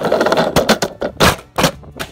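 Plastic toy car tumbling down carpeted stairs: a scraping rush for about half a second, then several hard knocks as it hits the steps.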